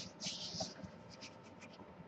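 A drawing point scratching across paper in short strokes: two scratches in the first half second, then a few lighter, briefer ones a little past the middle.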